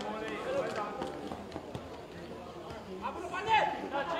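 Stadium ambience of voices: crowd chatter and shouting from the stands and pitch, with one louder shouted call about three and a half seconds in.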